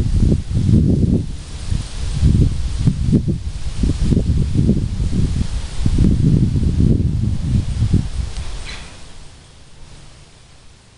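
Wind buffeting the microphone: a loud, gusty low rumble that swells and falls irregularly, then dies away near the end.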